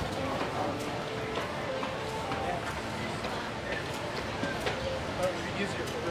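Indistinct chatter of people talking, over background music.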